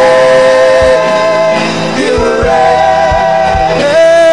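Worship music: long held sung notes that waver in pitch and change every second or two, over low drum hits.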